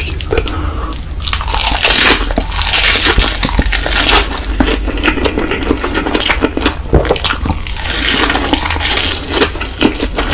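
Close-miked eating of a wrap of dried seaweed around kimchi and Indomie Mi Goreng fried noodles: crisp crackling and crunching with wet chewing, in a loud spell about two seconds in and again near the end.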